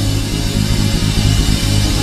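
Live church worship band playing instrumentally with no singing, a steady low bass note held under the music.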